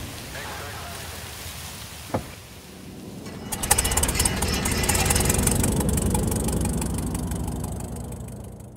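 Light bush plane's piston engine starting: a single click about two seconds in, then the engine catches about three and a half seconds in and runs with a rapid popping beat over a steady low hum, fading out near the end.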